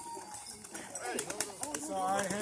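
A white dove's wings flapping with quick clicks as it is released from a man's hands and takes off, over people's voices.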